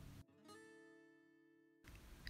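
Near silence, with a faint plucked guitar note from background music ringing and fading away.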